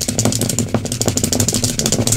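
Dice rattling as they are shaken in cupped hands: a dense, rapid run of small clicks.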